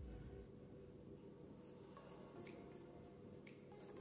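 Faint scratching of a white chalk pencil drawing short curved guide strokes on a painted stone, a quick run of light strokes.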